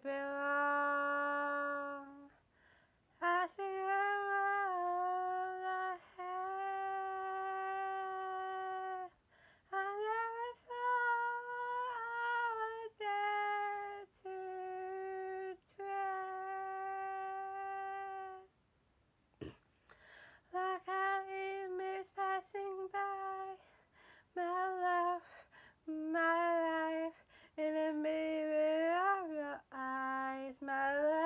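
A woman singing unaccompanied, holding long notes in phrases broken by short pauses, with no backing music audible.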